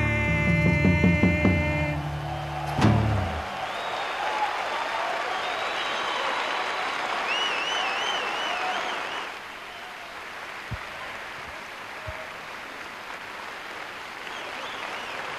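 A live rock band with acoustic guitar, bass, drums and percussion ends a song on a final hit about three seconds in, and a concert audience breaks into applause, with a warbling whistle partway through. The applause falls to a quieter level after about nine seconds.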